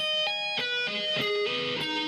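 Electric guitar playing a fast legato arpeggio shape high on the neck: a run of single sustained notes joined by hammer-ons, changing pitch about five times a second.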